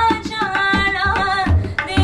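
A woman singing a devotional song, accompanied by tabla. Deep bass-drum strokes and sharper treble strokes keep time under long held sung notes.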